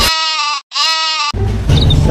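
Two short bleats, each about half a second long with a brief gap between them, followed by a man starting to speak.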